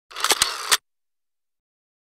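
Short sound effect accompanying an animated logo: a brief noisy swish with a few sharp clicks inside it, lasting under a second.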